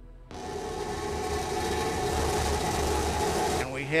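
Starship SN15's Raptor rocket engines lighting for the landing burn, heard on the SpaceX webcast audio as a loud, steady rushing roar with a low rumble beneath, starting about a third of a second in. A voice begins near the end.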